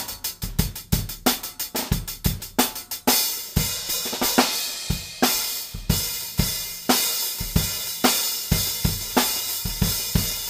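Drum kit played with Paiste Formula 602 cymbals: a quick run of strokes, then about three seconds in a cymbal crash that rings on under a steady beat of drum and cymbal strokes with bass drum.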